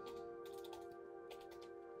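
Faint computer-keyboard typing: a few quick keystrokes in two short runs as a word is typed. Soft background music with sustained notes plays under it.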